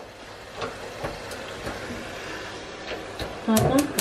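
Gas hob burner being lit: a few sharp, irregular igniter clicks over a steady hiss, as the knob is pressed again to relight a burner that went out.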